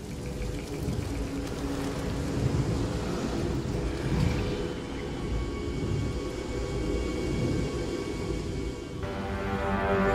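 Tense, ominous film score: held tones over a deep rumble, swelling louder with more sustained notes near the end.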